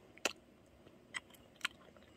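Close-up chewing of a honey-dipped peeled mandarin: three short clicks from the mouth, spread over about a second and a half.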